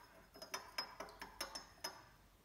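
Metal teaspoon stirring salt into water in a glass tumbler, tapping the glass in about seven light clinks, each with a brief glassy ring.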